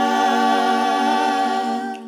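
Gospel choir singing a cappella, holding one long steady note that breaks off near the end.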